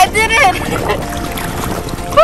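A woman's brief high vocal exclamations near the start, then water sloshing and splashing around a snorkeler as she climbs up a ladder out of the sea.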